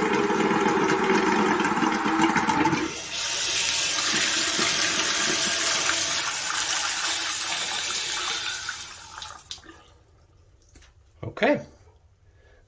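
Water and air spurting unevenly from a bathroom faucet spout with its aerator removed as air is bled from a newly filled under-sink water heater tank. After about three seconds it settles into a smooth, steady stream, and it is shut off a couple of seconds before the end.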